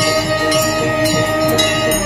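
Temple ritual music: a held, steady reed-like tone over drumming, with a bell or small cymbal struck about twice a second.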